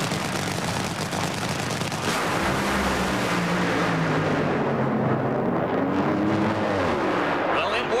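Two Top Fuel dragsters' supercharged nitromethane V8 engines at full throttle, launching side by side and running the quarter mile: a loud, crackling din. After about four seconds, as the cars reach the finish, the sound dulls and lower engine tones remain.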